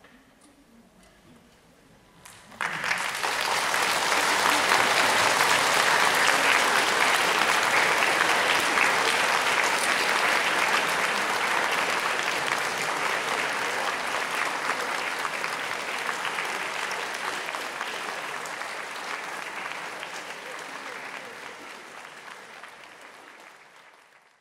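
A few quiet seconds, then an audience suddenly breaks into applause about two and a half seconds in. The clapping holds steady and then slowly fades away toward the end.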